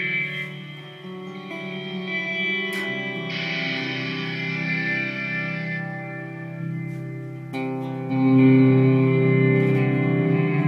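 Electric guitar played through the Eventide Space pedal's Blackhole reverb algorithm: sustained, washy chords with a long reverb tail. The treble brightens for a couple of seconds in the middle as the post-reverb EQ is turned. A new, louder chord swells in near the end.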